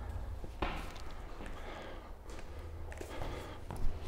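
Faint footsteps on a staircase: a few soft, scattered knocks over a low room hum.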